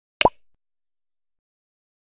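A single short pop sound effect with a quick upward glide in pitch, near the start.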